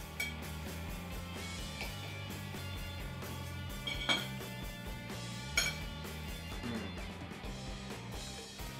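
Background guitar music with a steady bass line, over which metal cutlery clinks a few times against a plate, most sharply about four seconds in and again about a second and a half later.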